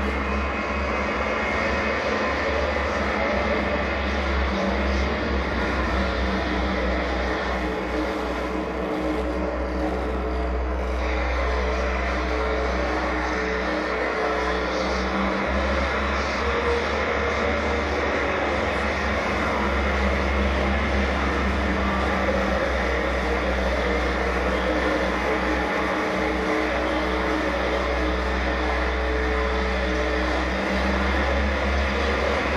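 Live death industrial noise: a dense, barely changing drone of electronic noise over a deep, heavy rumble, with a few held tones in the middle range.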